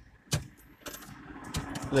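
Handling noise: a sharp click about a third of a second in, then rubbing and rustling that grows louder toward the end.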